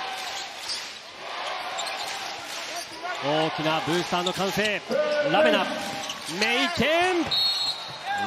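Basketball game on a hardwood court: the ball bouncing, sneakers squeaking in short sharp chirps, over arena crowd noise. A short, high referee's whistle sounds near the end, stopping play.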